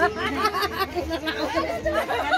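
People talking over one another: overlapping voices in lively chatter.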